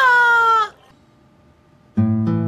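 A single high, drawn-out cry, its pitch sliding slightly down, lasting under a second.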